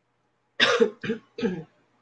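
A woman clearing her throat with three short coughs, the first the longest.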